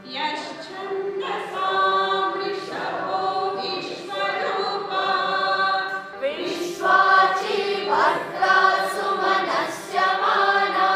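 A congregation singing a devotional chant together, many voices holding long notes in phrases that break and restart every second or so.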